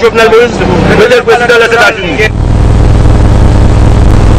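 A man speaking for about two seconds, then a loud, steady low rumble for the rest.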